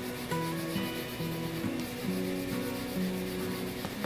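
Highlighter strokes rubbing across a thin Bible page, over soft background music of slow held notes.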